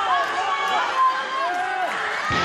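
Several raised voices calling out at once, overlapping, with pitches that rise and fall.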